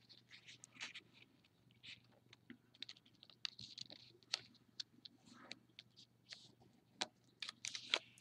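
Faint crinkling and creasing of a small folded sheet of paper pressed by fingers and fingernails, with scattered soft clicks and brief rustles.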